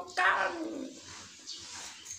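A woman's voice: one drawn-out spoken word near the start, then quieter noise.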